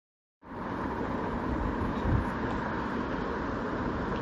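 A steady rushing background noise with no speech over it, starting abruptly about half a second in after a moment of dead silence.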